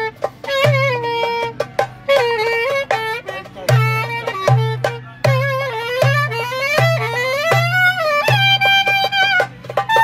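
Clarinet playing an ornamented Turkish folk melody, with slides and quick turns between notes. A darbuka hand drum keeps a steady beat beneath it.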